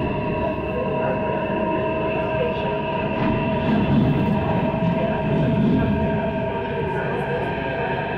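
A Delhi Metro train heard from inside the coach while running: a steady electric whine of several held tones over the continuous rumble of the wheels on the rails.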